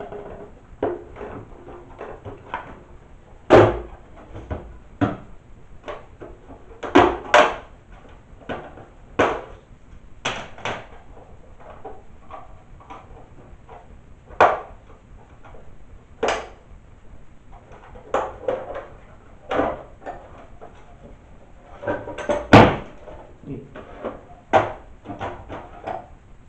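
Plastic housing of an old flat-panel PC monitor being pried apart with a screwdriver: irregular sharp clicks and snaps as the case clips give, with a few louder cracks and knocks.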